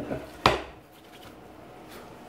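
Wooden guitar neck blank set down on a wooden workbench: two knocks of wood on wood, the second, about half a second in, the louder.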